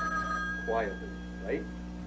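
Telephone ringing with an incoming call: a steady two-tone ring that stops about half a second in.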